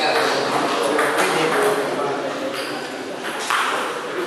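Table tennis balls clicking in irregular single bounces over background voices and chatter.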